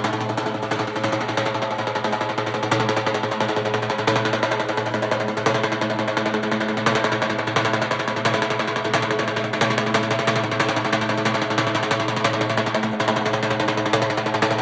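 Loud music: sustained chord tones held under a fast, dense beat.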